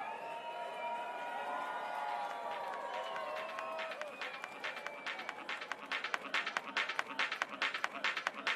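UK hardcore DJ set starting through the club sound system: a few seconds of held, gliding tones, then a fast, driving beat comes in about four seconds in and gets louder.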